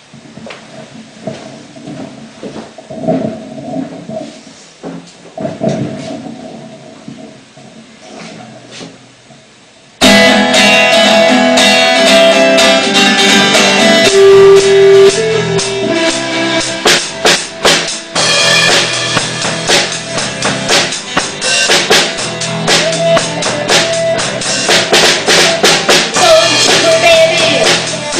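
Opening of a progressive rock song: a quiet intro for about ten seconds, then the full band comes in suddenly and loudly with drum kit and guitars.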